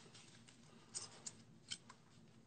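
Near silence, broken by a few faint, short clicks.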